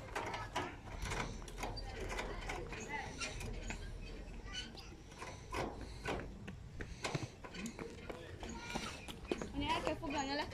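Irregular metallic clicks and knocks from an old tractor's steering wheel and gear lever being worked by hand, the linkage rattling with each movement.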